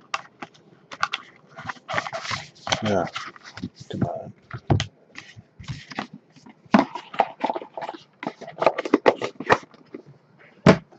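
Hands handling a cardboard trading-card box and its packs: a quick string of short clicks, crinkles and scrapes.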